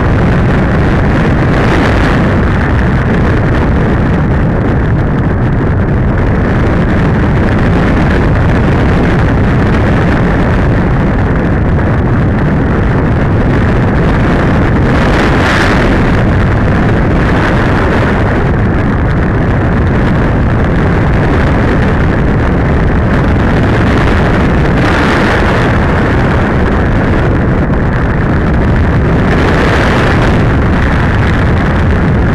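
Rushing airflow buffeting the onboard camera's microphone of an RC glider in flight, a steady loud roar with no motor tone, swelling briefly a few times as the air gusts over it.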